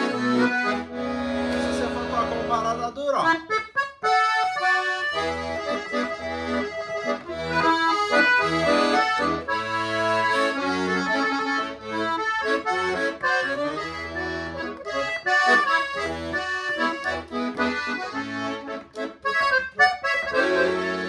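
Freshly tuned and serviced Paolo Soprani piano accordion being played: held notes for the first few seconds, then a melody on the right-hand keyboard over a regular left-hand bass-and-chord accompaniment.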